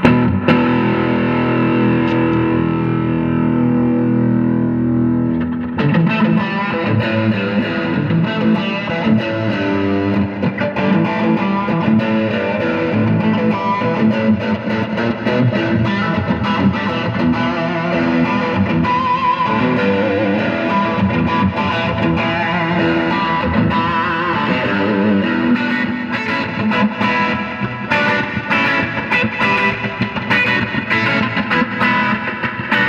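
2019 Fender American Performer Telecaster played through an amp on its bridge pickup wide open: a chord rings out for about six seconds, then busier picked lines and chords follow.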